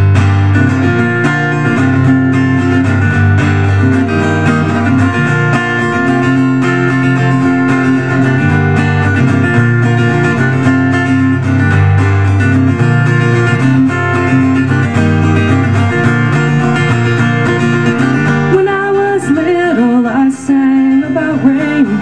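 Acoustic guitar strumming the introduction of a song, starting suddenly and then going on steadily.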